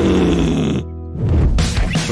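A cartoon character's voiced groan, held and falling slowly in pitch, breaking off just under a second in, over background music; the music carries on alone after a short dip.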